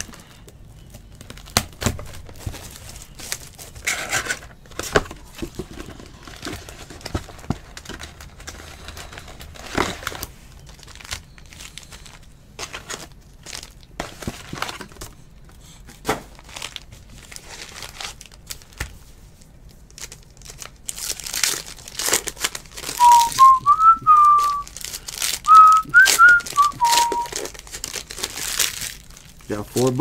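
Trading-card packs being torn open, with wrappers crinkling and cards being handled: a steady run of small clicks and rustles, growing louder with heavier crinkling and tearing in the last third. About three-quarters of the way through, someone whistles a few short notes.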